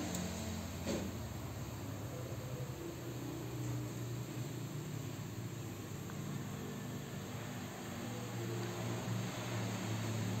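Steady low hum of background noise, with a faint click about a second in.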